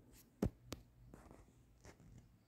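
A few light taps of a fingertip on a phone's touchscreen, the loudest about half a second in.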